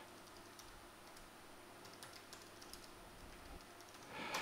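Faint typing on a computer keyboard, an irregular run of light key clicks as a username and password are entered.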